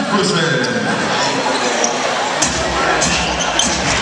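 Basketball bouncing on a hardwood gym floor during play, a few sharp thuds in the second half, over steady crowd chatter and shouting voices in the hall.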